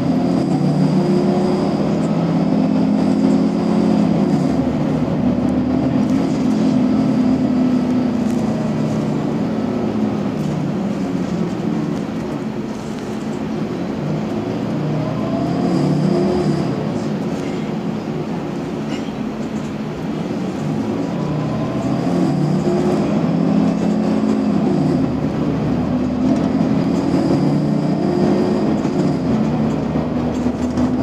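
Mercedes-Benz Citaro G C2 NGT articulated natural-gas bus heard on board. Its six-cylinder gas engine rises and falls in pitch several times as the bus accelerates and eases off, with a quieter dip about 13 seconds in.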